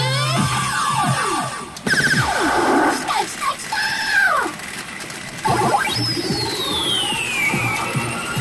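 P Fever Powerful 2024 pachinko machine playing its electronic music and sound effects: quick rising and falling synth sweeps that break off and restart abruptly about two seconds in and again about five and a half seconds in, with a long falling glide near the end.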